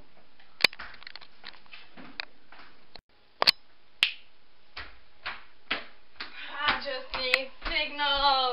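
Scattered sharp clicks and knocks, then in the last second or so a person's voice making drawn-out sounds without clear words.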